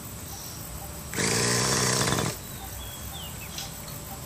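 Electric starter spinning the glow engine of a Raptor 50 model helicopter: one loud buzzing burst of about a second, starting about a second in, then cutting off.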